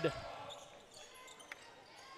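Faint on-court basketball sound: a few soft bounces of the ball on the hardwood and a sharp tick about a second and a half in, over low arena hum.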